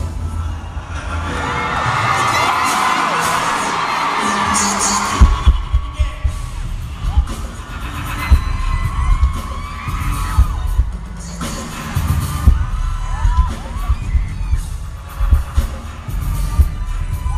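Live arena concert music through the PA: a heavy, repeating bass beat with little melody over it. A crowd screams and cheers over the first few seconds before the beat comes back in strongly.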